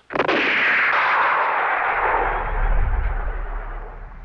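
A single cinematic boom sound effect: a sudden sharp crack followed by a long echoing tail that dies away over about four seconds, with a deep rumble swelling in the middle.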